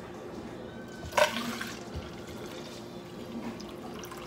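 Rice water poured from a mason jar into a funnel set in a plastic bottle: a brief splash about a second in as the water first hits the funnel, then a soft steady trickle.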